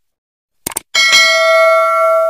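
Subscribe-button animation sound effect: a few quick mouse clicks, then about a second in a single bright notification-bell ding that rings on steadily.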